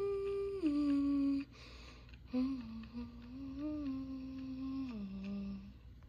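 A person humming a slow, wordless tune with closed lips, holding long notes that step downward in pitch. The humming breaks off for about a second partway through, then picks up again on lower notes and stops shortly before the end.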